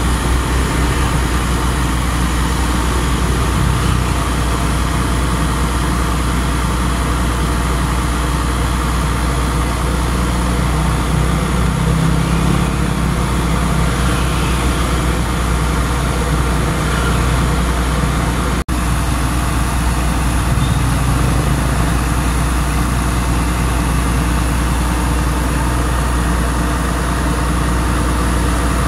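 A motor running steadily with a low rumble. It drops out for an instant about two-thirds of the way through.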